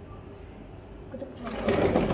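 Sliding window being slid along its track: a loud rolling rattle that starts about one and a half seconds in, over a low steady background hum.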